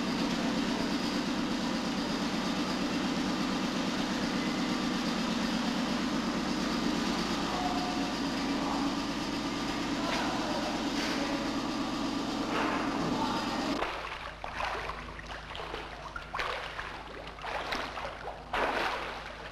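Steady machinery drone like a running engine, cutting off suddenly about fourteen seconds in. It gives way to irregular splashing and rushing as water floods the submarine escape chamber.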